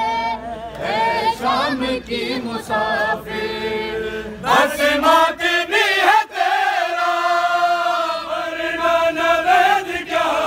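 A group of men chanting an Urdu noha, a Shia lament, together without instruments. They hold long wavering notes, with the lead reciter's voice carried by the crowd around him.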